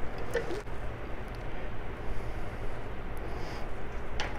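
Faint handling sounds as the plastic cap of a Rotax rotary valve oil reservoir is unscrewed and the reservoir is tipped into a plastic measuring jug: a few light clicks and knocks over steady background hiss.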